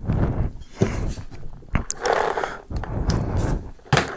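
Handling noise picked up by a microphone mounted on a paintball gun as the gun is lifted and moved around: uneven bumps, knocks and rubbing on the mic.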